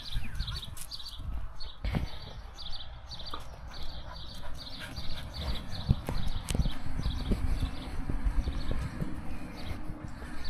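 Footsteps of a person and a dog walking across concrete paving stones: a steady series of light clicks, about two a second, with a few dull thumps.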